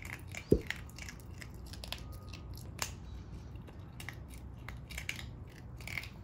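A Pomeranian chewing a snack: irregular crisp crunches and clicks over a low steady hum, with a short dull thump about half a second in.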